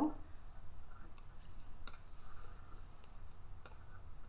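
A few faint, sharp clicks and small scratchy ticks as a small metal drawing compass is handled and set onto a warmed wax-painted board, over a low room hum.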